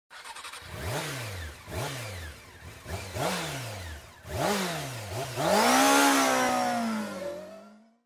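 Motorcycle engine revved in four short throttle blips, each rising and dropping in pitch, followed by a longer rev that climbs and then slowly winds down, fading out near the end.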